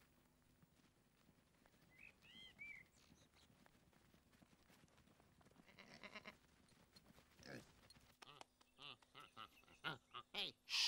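Mostly near quiet, with faint sheep bleats: a short one about six seconds in, another a moment later, and several more in the last two seconds.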